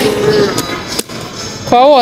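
A woman's voice, then a single sharp click about halfway through, followed by a quieter moment before the voice returns near the end.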